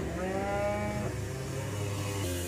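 A young Simmental calf of about eight months mooing: one long call filling most of two seconds, its pitch stepping down about halfway through.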